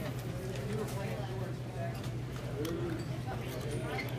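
Indistinct chatter of several people over a steady low hum, with a few sharp, scattered clicks of pool balls striking on the tables around.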